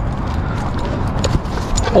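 Steady low rumble of wind and movement noise on a chest-mounted action camera as the wearer walks, with a few light clicks in the second half.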